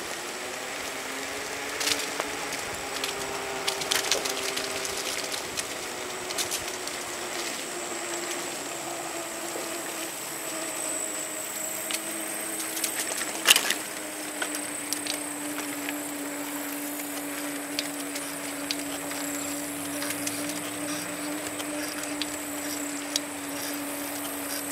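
Steady whine of a small motor moving along a paved trail. It slowly drops in pitch over the first half, then holds. Scattered clicks and rattles run through it, with one sharp knock about halfway, and there is a faint high steady tone above.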